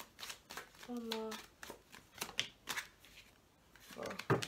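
A deck of tarot cards being shuffled by hand: a string of short, sharp card clicks and flicks at an irregular pace.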